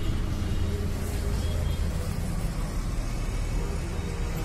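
Street background noise: a steady low rumble of road traffic, with voices mixed in.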